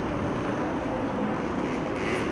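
A car's engine running, heard as a steady, even noise with no breaks.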